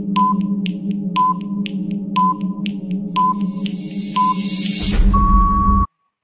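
Quiz countdown-timer sound effect: a steady low drone with a short beep once a second and ticks in between, ending about five seconds in with a louder buzzing burst and a held tone that cuts off sharply, marking time up.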